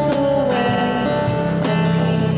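Acoustic guitar strummed in a live acoustic band performance, with a cajon keeping the beat.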